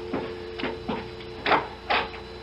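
Telephone dial tone from a receiver left off the hook: a steady two-note hum. Over it come a few footsteps, sharp knocks on a hard floor.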